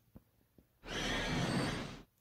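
A man's loud, drawn-out breath, just over a second long, taken in a pause between sentences. It follows a few faint clicks.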